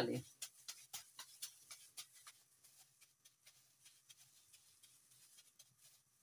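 Faint crinkling of a plastic glove and soft handling of mashed potato mixture as gloved hands shape a kabab patty. There is a run of small crackles in the first two seconds or so, and these thin out afterwards.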